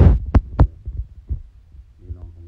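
A few low, dull thumps: two sharp ones about a third and two thirds of a second in, then a fainter one later. They are handling knocks on the phone that is recording.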